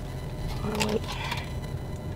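Steady low hum inside a car's cabin with the engine on, with a short hummed vocal sound just before the middle.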